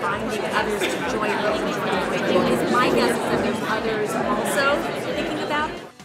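Many people talking at once in a large hall, a steady hubbub of overlapping conversations that cuts off abruptly near the end.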